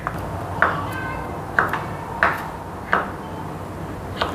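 Kitchen knife slicing boiled jengkol (dogfruit) on a wooden cutting board: a sharp knock each time the blade goes through and hits the board, four strong strokes about two-thirds of a second apart, over a low steady hum.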